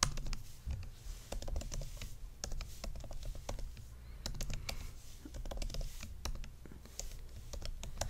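Computer keyboard typing: irregular runs of quick key clicks as lines of code are typed.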